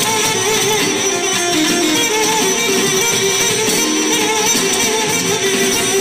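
Balkan kuchek dance music played by a band on electric guitar and electronic keyboard, with an ornamented melody that wavers in pitch over a steady dense accompaniment.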